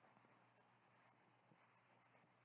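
Very faint rubbing of a cloth wiping marker off a dry-erase whiteboard.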